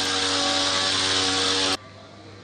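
Powered backpack disinfectant sprayer running: a steady hiss of spray over a small motor's even whine. It cuts off abruptly near the end.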